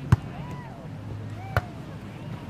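A volleyball being hit twice during a rally: two sharp slaps about a second and a half apart, the first the louder.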